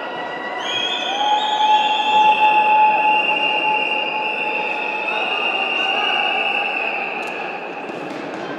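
Noise of a crowded sports hall with several long, steady high tones layered over it, starting at different moments and overlapping; the loudest comes in about a second in and holds for several seconds.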